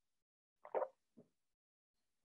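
A person swallowing a sip of water: a soft gulp about two-thirds of a second in and a fainter one just after a second, with silence around them.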